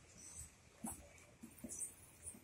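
Near silence in a pause, broken by a few faint, brief sounds.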